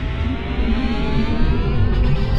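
Cinematic logo sting: a deep rumble under a wash of noise, with several tones gliding slowly upward as it builds.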